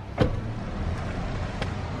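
A car engine idling steadily, with a short knock just after the start.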